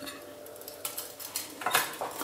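A few soft clinks and taps on ceramic plates as meatballs are set down on them, the clearest near the end.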